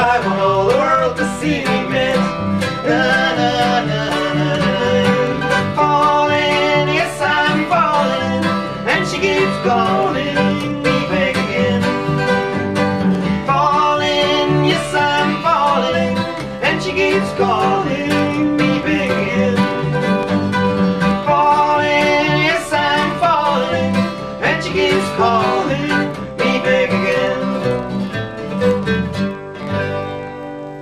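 Live acoustic string trio playing an instrumental bluegrass-style passage: quick mandolin picking over strummed acoustic guitar and a plucked upright double bass. The song closes on a final chord right at the end, which then rings away.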